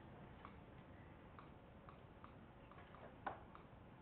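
Faint, irregularly spaced light taps of a stylus on an interactive whiteboard while writing, over near-silent room tone; one tap about three seconds in is louder than the rest.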